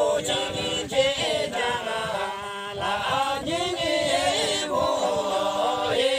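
A group of men and women singing a Tamang folk song together in a chant-like melody, their voices moving in unison and settling into a held note near the end.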